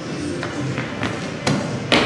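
A series of five or so thumps and taps, the two loudest near the end, over faint background music.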